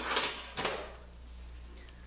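A metal clamp being handled against the aluminum extrusion fence of a drill press table: two short rattling scrapes in the first second.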